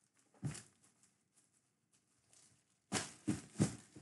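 Short knocks and scrapes of a cardboard jersey box being handled by gloved hands: one knock about half a second in, then a quick run of four near the end, with near silence between.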